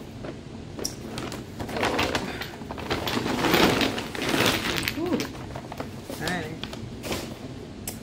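A shopping bag rustling and crinkling as items are handled and taken out of it, in irregular bursts that are loudest in the middle, with brief quiet vocal sounds near the end.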